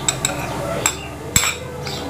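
Metal spoon clinking against glass bowls as sliced onion is scooped into the salad: a few light clinks, the sharpest a little past halfway.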